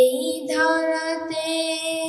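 A boy singing a Bengali Islamic jagoroni (devotional awakening song) solo through a microphone, drawing out long held notes, with a change of note about half a second in.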